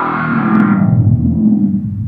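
An ear-candy effect sample from a sample library auditioned in a drum sampler's browser: a loud, unidentifiable synthetic texture whose bright upper part falls away in the first second, leaving a dense low sound that stops just after.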